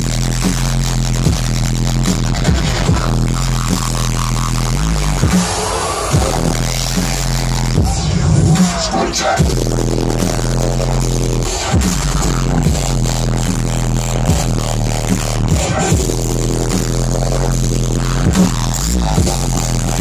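Dubstep DJ set played loud over a festival sound system, with a heavy bass line stepping between low notes.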